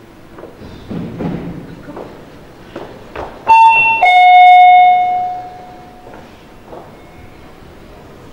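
Two-note ding-dong doorbell chime about halfway in: a higher note, then a lower one that rings on and fades over about two seconds.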